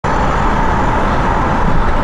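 Steady vehicle noise heard from inside a van's cabin, an even low hum and hiss with no breaks.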